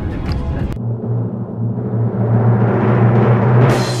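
A timpani drum roll cuts in abruptly about a second in and builds steadily in loudness for about three seconds, then stops just before the end. It works as a build-up to a reveal. Before it there is a moment of car-interior noise with a little talk.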